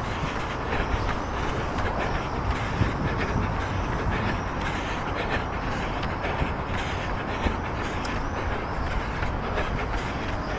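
Wind rushing over the microphone of a camera carried by a running person, a steady rumbling noise with the runner's footfalls ticking through it.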